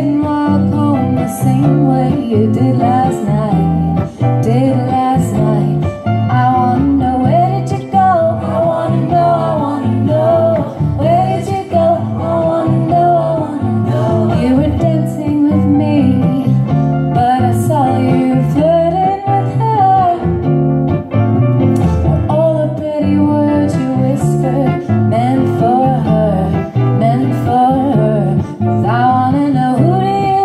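A woman singing a song into a microphone with plucked acoustic guitar accompaniment, played live.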